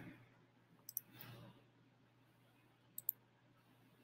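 Two quiet computer mouse clicks, about two seconds apart, each a quick double tick of the button going down and coming up, against near silence.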